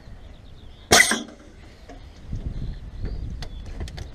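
A short, sharp hiss of air about a second in, as a trailer air line's palm coupling is disconnected from the headboard. A few light clicks follow near the end.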